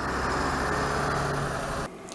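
Road traffic noise: vehicle engines running with a steady low hum and an even rush of noise, cutting off suddenly near the end.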